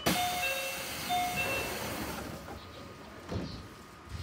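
JR Central 311 series train's doors closing: a sudden burst of air hiss from the door engines lasting about two seconds, with a two-note chime that sounds twice in the first second and a half.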